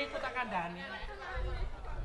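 Speech: a performer talking on stage, with a low rumble in the second half.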